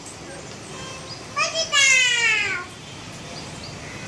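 A person's voice calls out once about a second and a half in: a loud, drawn-out call of about a second that falls in pitch, after a couple of short rising notes.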